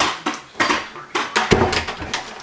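Hard objects clattering: about eight sharp knocks in quick, uneven succession, the loudest one and a half seconds in.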